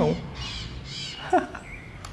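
A bird giving two harsh calls, about half a second apart.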